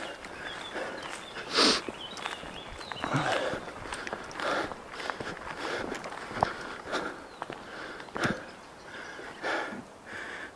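Footsteps of a person walking through grass, an uneven series of scuffs and rustles, with a louder scuff a little under two seconds in.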